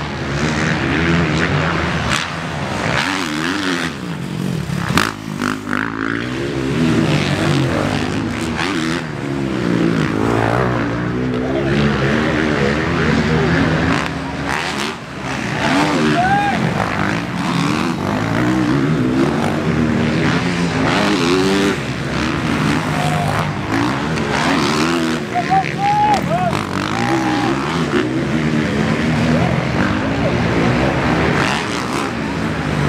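Several motocross bike engines racing around the track, revving and shifting, their pitch rising and falling as riders accelerate and brake past the camera.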